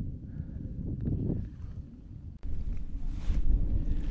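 Wind buffeting the camera's microphone: a low, rough rumble that drops out abruptly for a moment about two and a half seconds in, then comes back a little louder.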